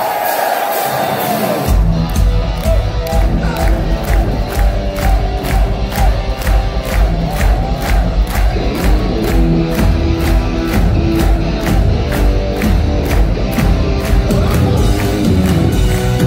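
Crowd cheering and shouting, then about two seconds in a live heavy metal band kicks in loud with drums, bass and distorted guitars, the drums keeping a steady driving beat as the song's intro gets under way.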